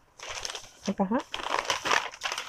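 Paper wrapping crinkling and silk saree fabric rustling as the folded saree is pulled open, starting just after the beginning and growing louder in the second half.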